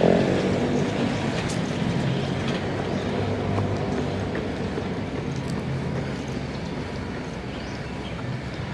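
Steady rumble of city traffic with a low drone running under it, easing slightly toward the end.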